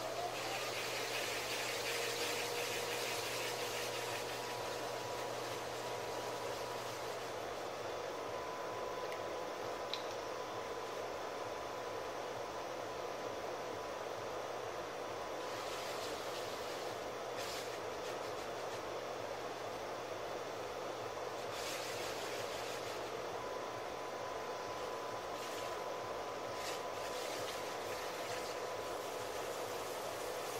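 Electric potter's wheel running steadily, its motor giving a low hum with a faint steady tone, while wet hands rub against the spinning clay. There is a hiss of hands on clay over the first few seconds and a few short rubbing sounds in the second half.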